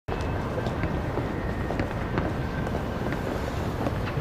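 Steady low rumble of city street ambience, with faint taps scattered irregularly through it.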